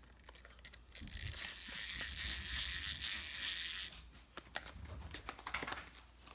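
Small clockwork wind-up motor of a novelty fun-face toy whirring as its spring runs down. It runs for about three seconds, stops suddenly, and is followed by a few light plastic clicks.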